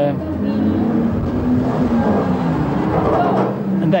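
Steady rumble of a motor vehicle's engine, with a low drifting engine note, easing off near the end.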